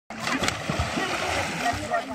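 River water splashing as a boy plunges in feet-first from a backflip, with a sharp smack about half a second in, followed by continued splashing.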